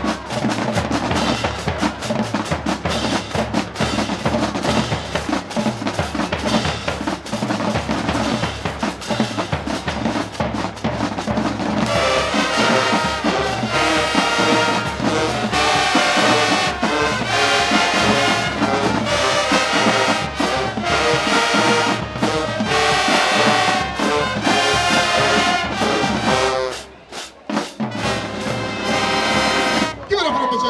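High school marching band playing live, drums and brass. The drums lead at first, and the full brass section comes in strongly about twelve seconds in. The band drops out briefly late on, then comes back in.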